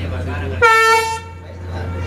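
A horn sounds one short, loud, steady-pitched blast of a little over half a second, about half a second in, over a steady low engine drone.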